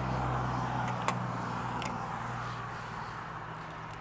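Low steady hum of a motor vehicle's engine running, slowly fading, with a couple of faint light clicks.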